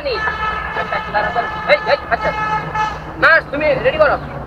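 A long steady horn tone with several pitches at once, lasting about three seconds, followed near the end by two short rising-and-falling voice-like sounds.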